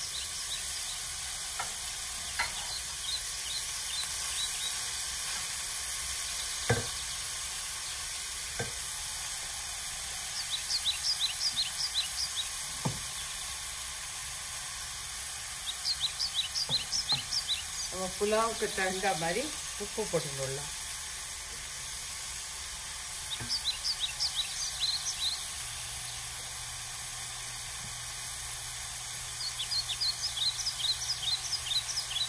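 Grated zucchini sizzling steadily in a stainless steel pan, stirred with a spatula in several short bursts of quick scraping strokes. A few sharp knocks come from the pan, the loudest about a quarter of the way through.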